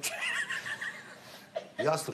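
A person's high-pitched, wavering vocal squeal lasting about a second, with a man's voice starting near the end.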